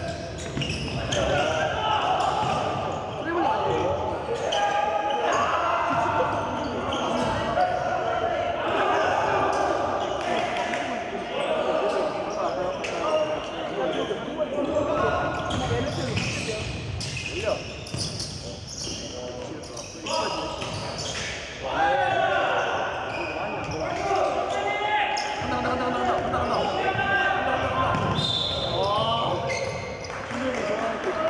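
Basketball game play: a ball bouncing on a hardwood gym floor, with players' voices calling out, echoing in a large hall.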